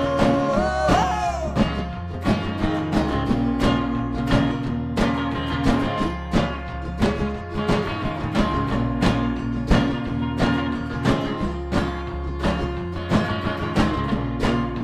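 A live rock band playing an instrumental passage on electric guitar, strummed acoustic guitar and drums, with a steady run of drum hits. About a second in, a note slides and wavers.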